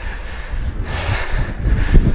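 Wind rumbling on a body-worn microphone, with a heavy breath out about a second in from a man winded after an exercise set.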